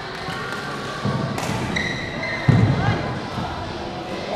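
Badminton play on a wooden sports-hall floor: dull thuds of players' feet landing, a sharp racket hit, and short high shoe squeaks, with a hall echo and background chatter.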